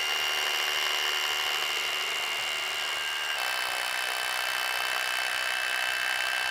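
Corded Hilti rotary hammer drilling into a concrete block, running steadily with a high whine; its tone shifts slightly a little over three seconds in.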